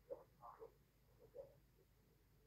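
Near silence: room tone with a few faint, brief soft sounds in the first second and a half.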